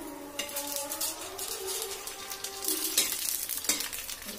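Pani puri shells sizzling and crackling as they fry in hot oil in a small wok, with a metal spoon stirring them against the pan.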